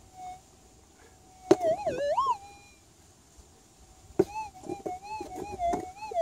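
Minelab GPZ 7000 metal detector holding a steady threshold hum, then breaking twice into a warbling target signal that wavers up and down in pitch: first about a second and a half in, then again from about four seconds. Each signal follows a sharp tap as a plastic scoop of dirt is passed over and emptied onto the coil. The signals are the detector answering to a small gold piece in the scooped dirt.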